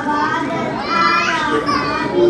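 Children chattering and calling out amid adult voices in a large, crowded hall, with one child's high voice rising sharply a little past halfway.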